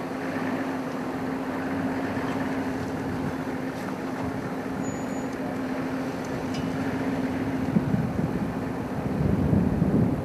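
Safari game-drive vehicle's engine running steadily at idle, a constant low hum under a noisy bed, with a louder low rumble about nine seconds in.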